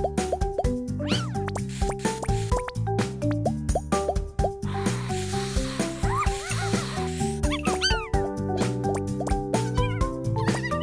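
Playful children's cartoon music with bouncy, plinking notes over a steady beat. Short plopping sounds and quick bending, whistle-like slides are laid over it, thickest in the second half.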